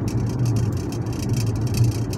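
Steady low drone of engine and road noise inside the cabin of a moving car.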